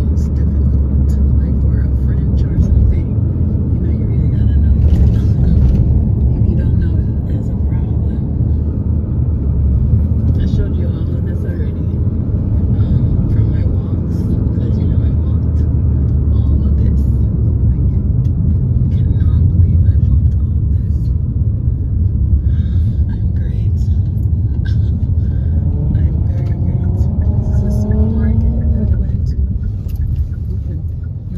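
Steady low rumble of a car's engine and tyres on the road, heard from inside the moving car's cabin, with scattered light clicks and rattles. Near the end a short sound bends in pitch.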